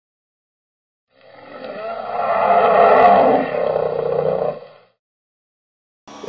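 Intro sound effect: a dense, roar-like swell that rises out of silence about a second in, peaks around the middle and fades away before the end.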